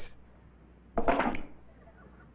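A single short vocal sound from a voice, under half a second long, about a second in, with quiet around it.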